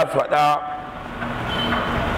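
A man's voice speaking briefly into a microphone at the start, then a pause filled with steady background noise.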